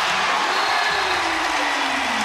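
Arena crowd cheering and applauding a home-team three-pointer, a steady roar with one long call falling in pitch through it.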